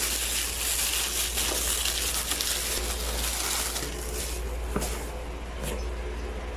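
Plastic bag wrapping crinkling and rustling as a set of plastic food containers is pulled out of a cardboard box; the crinkling eases after about four seconds, and a couple of sharp clicks follow near the end.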